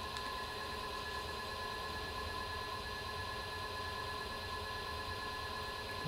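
Electric potter's wheel running with a steady hum and a thin, constant whine over it.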